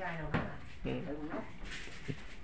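Speech with a single short knock about a third of a second in, followed by a few faint clicks.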